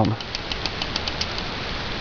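Thumb safety of a Springfield mil-spec 1911 pistol being wiggled up and down while its pin is held in, giving a run of faint, light metallic clicks over a steady hiss.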